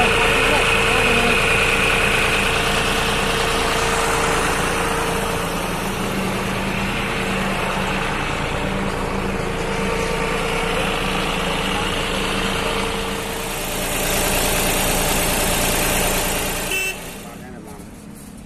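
John Deere 5210 tractor's three-cylinder diesel engine running steadily at low revs as the tractor moves off, until the sound cuts off shortly before the end.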